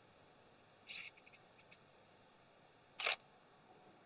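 Nikon D5600 DSLR taking a shot: a faint high tick about a second in, then a single short shutter click about three seconds in.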